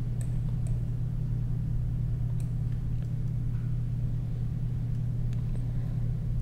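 A steady low hum in the background, with a few faint, scattered clicks of a computer mouse.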